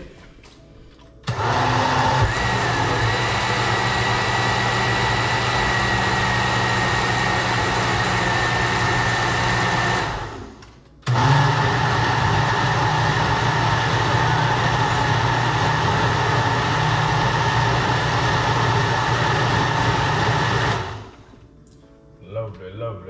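Countertop blender blending a thick, milky rice punch in two steady runs of about nine seconds each. It switches on about a second in, winds down around ten seconds, starts again a second later, and winds down near the end.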